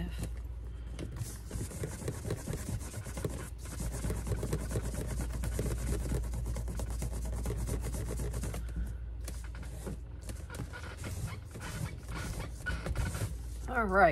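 A cloth rubbing back and forth on a leather purse strap: a fast, steady run of scrubbing strokes that thins into scattered strokes in the second half. A short voice sound comes right at the end.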